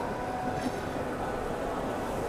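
Steady background din of a busy trade-show hall, with machines running and faint chatter.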